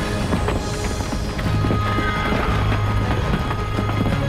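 Dramatic cartoon background score over a steady low rumble, with a dense run of clattering knocks throughout.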